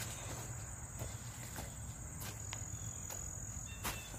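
Outdoor insect chorus, a steady high-pitched trill that holds without a break, with a few faint ticks, the clearest near the end.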